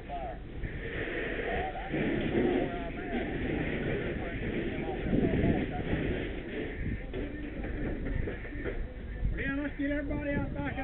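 Rushing hiss of a fire hose stream being sprayed into a burning structure, swelling about two seconds in and again about five seconds in. Indistinct voices are heard at the very start and near the end.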